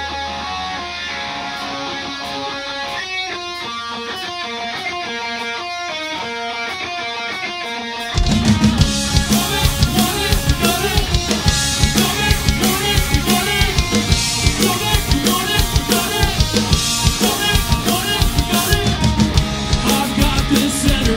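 Live rock band starting a song: a guitar intro plays alone, then about eight seconds in drums and bass come in and the full band plays loud and driving.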